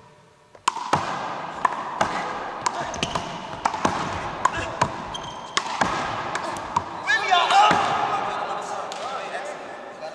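A handball rally: sharp smacks of the rubber ball off the wall, the hardwood floor and players' hands, about two a second, each ringing in the gym's echo. Sneakers squeak on the court seven to eight seconds in, the loudest moment.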